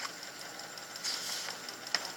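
A paper page in a picture book rustling as it is turned, with a short click near the end, over a steady background hum.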